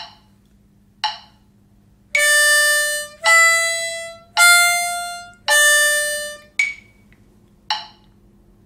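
Diatonic harmonica in C playing four one-beat notes in time with a metronome at 54 beats per minute: hole 4 blow, hole 4 draw, hole 5 blow, hole 4 blow (C, D, E, back to C). Each note lasts about a second and fades. Short metronome beeps mark the beat about a second apart, heard alone once before the first note and twice after the last.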